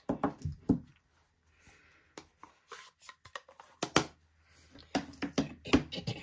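Light clicks and taps of stamping supplies being handled and set down on a tabletop, in a cluster at the start and another from about four seconds in.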